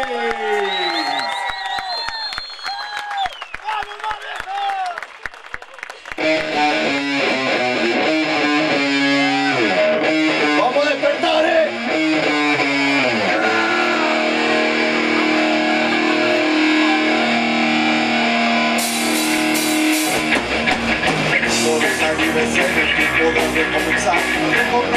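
Live rock band starting a song: electric guitars play alone at first, with bending notes, then swell into sustained chords. Cymbals join near the end, followed by bass and drums about twenty seconds in.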